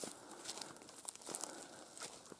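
Faint crackling rustle of stiff big berry manzanita leaves and twigs being brushed and pushed aside by hand, with scattered small clicks.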